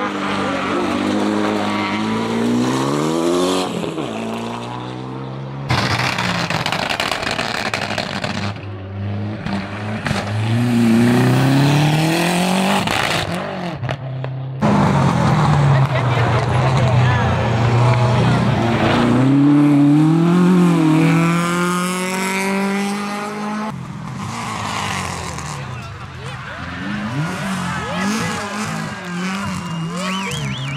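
Small front-wheel-drive rally hatchbacks, a Renault Clio among them, accelerating hard up a hill-climb course, the engine note climbing through each gear and dropping back at every upshift. The sound comes in several separate passes that begin and end abruptly.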